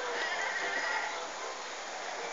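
Steady rain falling on the street, with a high, drawn-out call over it during the first second.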